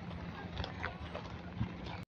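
Footsteps of a few people walking on a dirt path: a scatter of soft, irregular steps over a low, steady background.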